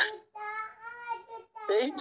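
A man's high-pitched, drawn-out laugh, held on a fairly steady note, then speech starting near the end.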